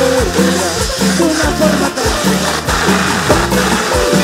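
Live cumbia band music with a steady driving beat and bass under a melodic lead line.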